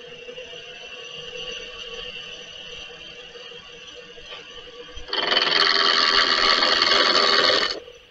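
Small wood lathe's motor running with a steady whine as it spins an oak pen blank between centres. About five seconds in, a much louder, steady rushing noise starts suddenly and cuts off nearly three seconds later.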